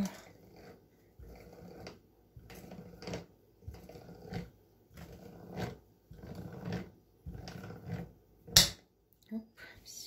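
Hand canning seamer being cranked around the tin lid of a glass jar to roll the lid's edge shut over its rubber ring: a series of about eight rasping metal strokes, each under a second. A sharp click near the end is the loudest sound.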